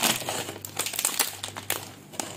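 Crinkly plastic and foil snack packets rustling and crackling as a hand rummages through a tub of them and picks one up; the crinkling is densest in the first half and thins out toward the end.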